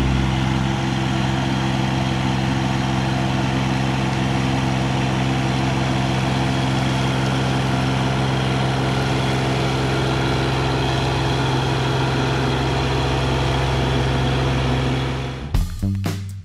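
Mahindra eMax 20S subcompact tractor's three-cylinder diesel engine running at a steady speed while the front loader handles gravel. Near the end it gives way to guitar music.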